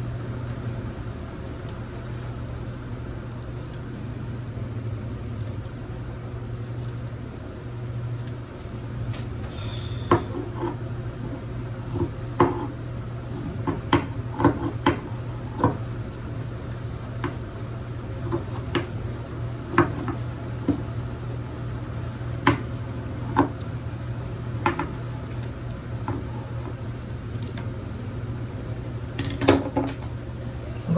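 Scissors snipping thread ends and fabric edges: short, sharp clicks at irregular intervals, starting about a third of the way in, with a few close together near the end. A steady low hum runs underneath.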